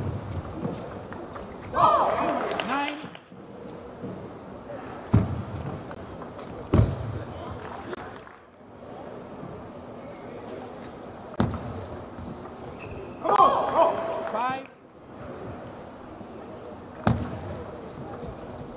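Table tennis rallies: a celluloid-type ball clicking off bats and table, with a few louder thuds. A player shouts twice, about 2 seconds in and again near 13 seconds.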